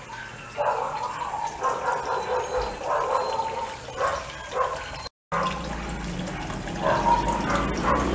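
Cooling water trickling from the still's return hose into the pump bucket, with a dog barking again and again in the distance. The sound cuts out for a moment about five seconds in, and a low hum follows.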